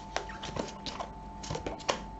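A deck of tarot cards handled and thumbed through in the hands: a string of small, irregular clicks and snaps of card edges.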